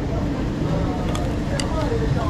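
Busy outdoor eating-place background: a steady low hum with a constant tone, faint voices, and a couple of light clicks a little past the middle.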